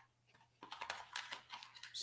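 Faint, irregular clicks and rustles of small objects being handled on a desk, starting about half a second in.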